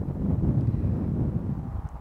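Wind buffeting a clip-on microphone: a low, rumbling rush that starts abruptly.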